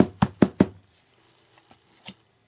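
Canvas-panel artboard with pastel paper taped to it being tapped four times in quick succession, about four taps a second, within the first second.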